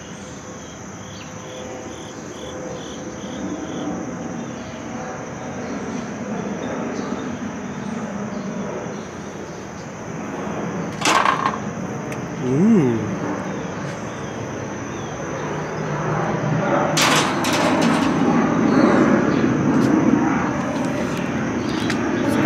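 Metal-framed mesh aviary door being handled: a sharp latch click about halfway through, a brief low creak just after, then a clatter of knocks a few seconds later. A steady high insect drone runs underneath.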